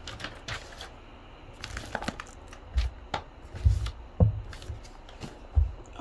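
Paper and cardboard packaging rustling and crinkling as it is handled, with scattered small crackles and several dull low thumps.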